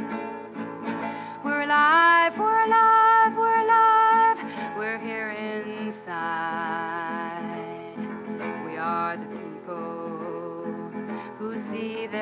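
A woman singing her own song to a strummed acoustic guitar. Near the middle the voice glides up into a long held high note, the loudest part.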